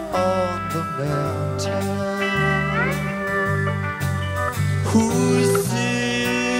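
Country-rock band playing an instrumental break, with a pedal steel guitar taking the lead over electric bass, rhythm guitar and drums; about halfway through the steel slides a note upward.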